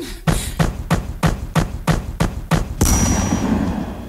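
Routine music mix breaking into a run of sharp percussive hits, about three a second, then a sudden hissing burst with a thin high tone near the end.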